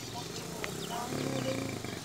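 Indistinct voices talking in the background, with short high chirps over them.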